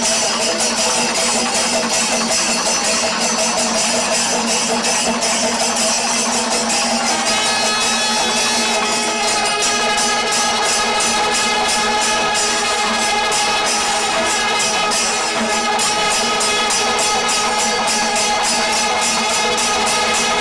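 Kerala temple melam ensemble playing: fast, steady clashing of ilathalam cymbals throughout, joined about seven seconds in by kombu horns sounding long held notes.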